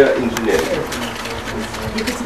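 Indistinct low talk among people in a room, with no clear words. There is a brief louder sound right at the start.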